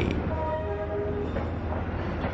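Low, steady rumble of a passenger train standing at a station platform, with a few short faint tones in the first second.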